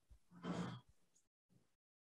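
A short, soft breath from a man, about half a second in, during a hesitant pause in speech.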